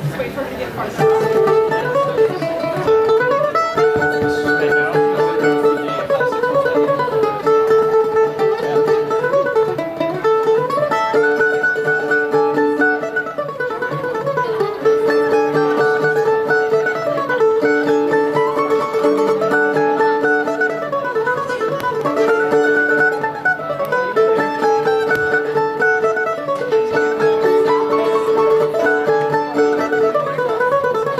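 Mandolin noodling between songs: a repeated run of notes climbing and falling again every few seconds over a held note.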